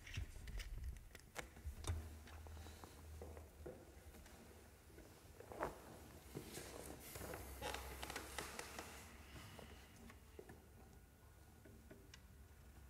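Faint handling noise between pieces: scattered small clicks and rustles as a water bottle is set down and the two guitarists get ready to play, with a denser patch of rustling in the middle.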